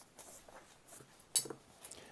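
Staedtler eraser rubbed on drawing paper in a few short scrubbing strokes, with light clicks and a sharper knock about one and a half seconds in.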